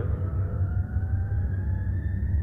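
House music played from a cassette tape: a steady bass-heavy groove under a long synth tone that slowly rises in pitch.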